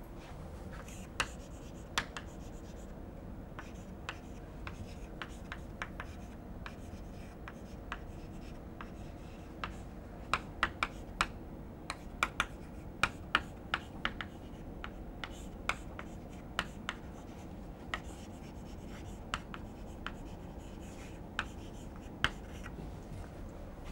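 Chalk writing on a blackboard: scattered sharp taps and short scratches as the chalk strikes and drags across the board, with a quicker run of strokes about halfway through, over faint steady room noise.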